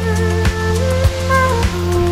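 Background music: a steady beat with a kick drum every half-second or so under a sustained bass and a held melody.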